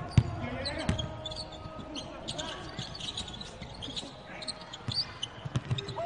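Basketball dribbled on a hardwood court during live play, with separate, irregular bounces.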